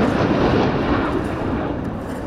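Fighter jet flying past in a training flight: a loud, steady jet-engine rumble that eases slightly toward the end.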